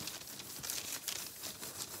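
A wet wipe rubbed quickly back and forth over a hard surface, a scratchy scrubbing that wipes off still-wet paint. It stops suddenly at the end.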